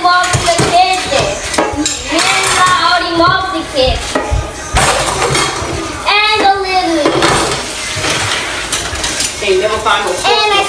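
Dishes and cutlery clinking and clattering in a kitchen sink as they are washed by hand, with voices talking over them.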